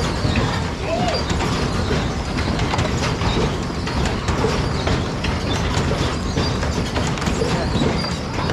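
Spinning kiddie jet-ski ride running, a steady mechanical rumble and rattle from the rotating ride.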